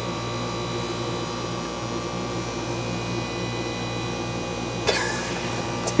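Steady hum of cafe equipment, with a sharp knock about five seconds in, as of a milk carton set down on the counter.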